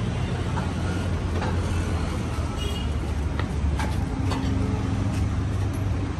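Steady low rumble of motor vehicles in street traffic, with a few faint clicks.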